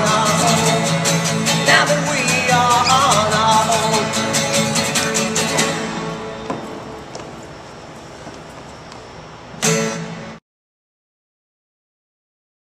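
Acoustic guitar strummed hard, with a singing voice over it in the first few seconds. From about six seconds in the last chord rings and fades, then one more loud strum just before the sound cuts off abruptly.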